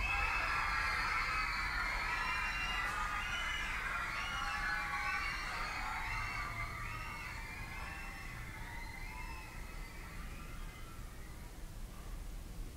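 The music track cuts off and a layered sound of many voices, like a crowd calling out, fades away slowly.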